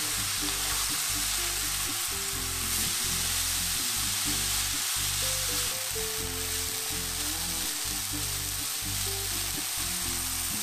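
Finely chopped potato sizzling steadily in oil in a non-stick frying pan as it is stirred with a wooden spatula. Background music with low notes plays underneath.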